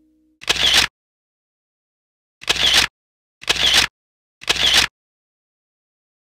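Four short, loud bursts of hissing noise, each about half a second long. The first comes near the start and the other three follow about a second apart, with dead silence between them.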